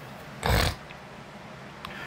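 A man's short, loud nasal snort about half a second in, over steady low room noise, with a faint click near the end.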